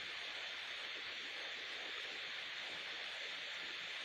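Steady faint hiss of microphone and recording background noise, with no other sound.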